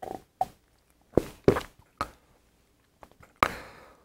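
A man drinking beer from a glass mug: several short gulps spaced about half a second apart, then about three and a half seconds in a longer breathy sound that fades away.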